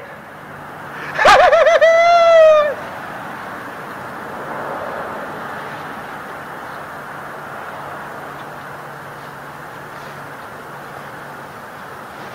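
A man's loud drawn-out cry about a second in, wavering and then held with a slowly falling pitch. It is followed by the steady rush of passing road traffic, which swells for a couple of seconds and then slowly fades.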